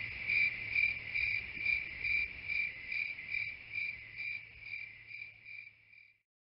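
A cricket chirping at an even rate of about two chirps a second in a high, thin tone, fading out gradually and stopping at the very end.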